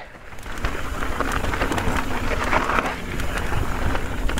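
Mountain bike tyres rolling fast over a loose, rocky dirt trail: a steady rush of gravel noise dotted with many small clicks of stones, building up about half a second in.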